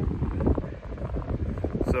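Wind buffeting the microphone: a low, rough rumble in a pause between sentences of speech.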